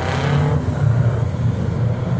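A pack of American cup oval stock cars running together as they approach two by two, their engines blending into a steady low drone that swells slightly in the middle.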